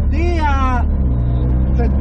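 Mazda RX-7's 13B rotary engine droning steadily, heard from inside the cabin while driving; a second steady low tone joins about halfway through. A brief voice sounds near the start.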